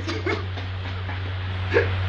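A man's quiet, breathy laughter in short broken bursts, over a steady low hum.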